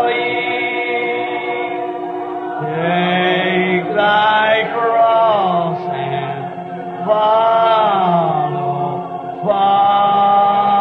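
A congregation singing a slow hymn together, in long held notes that slide from one pitch to the next, heard on a thin, narrow-band old recording.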